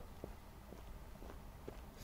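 Faint footsteps on dry forest ground, a soft step about every half second, over a low rumble.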